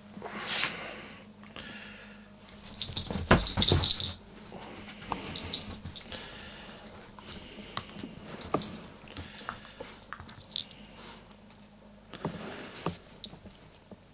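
A small dog's collar bell jingling in bursts as the dog plays with a ball on a bed, mixed with rustling and soft thuds on the bedspread. The loudest jingling burst comes about three to four seconds in.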